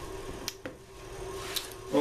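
A few light clicks and taps from hands handling a thin wood veneer strip and tools, over a faint steady hum.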